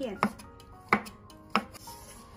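Cleaver slicing cooked dog-claw beans on a wooden cutting board: three sharp knife strikes on the board, roughly two-thirds of a second apart.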